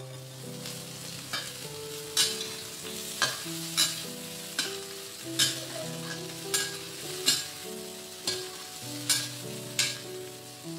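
Shrimp sizzling in a stainless steel wok over a steady frying hiss, while a metal spatula stirs and turns them. The spatula scrapes and knocks against the pan about once a second.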